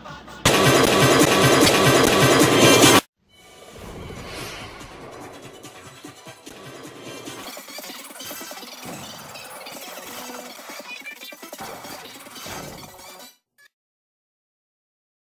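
Cartoon soundtrack. About half a second in comes a very loud, harsh burst of sound that cuts off suddenly after about two and a half seconds. After a brief gap, music with sound effects plays and stops shortly before the end.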